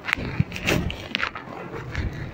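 Indistinct voices with a few short clicks and hisses, likely students murmuring in a classroom.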